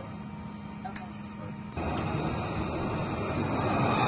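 A steady low hum, then a little under two seconds in, F/A-18 jet engine noise comes in suddenly and keeps growing louder toward the end.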